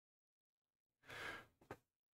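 A man's short, breathy sigh about a second in, followed by a brief click.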